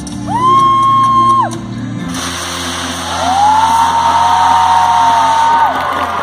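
Live pop concert audio at the end of a song: the band's music holds underneath while two long, high, steady voice notes ring out, the second one longer. Crowd cheering swells in about two seconds in.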